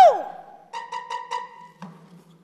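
A man's sung phrase ends on a falling note that fades out. Then come four quick, identical short musical tones, like wood-block or xylophone taps, and a single click near the end.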